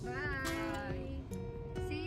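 Background music with steady held notes and a high voice that slides up and down in pitch near the start.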